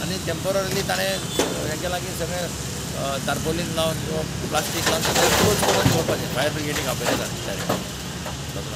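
Men talking in the open over a steady low drone of an idling vehicle engine.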